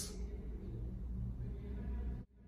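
Quiet, steady low rumble of outdoor background noise with no distinct events.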